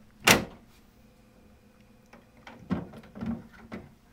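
A sharp plastic snap about a third of a second in as a toggle hinge is pulled free of a plastic bulk container's access door. Near the end come a few lighter plastic clicks and knocks as the door is worked loose from the sidewall.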